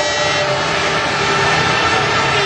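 Loud, steady din of a large stadium crowd, with a faint held tone beneath it.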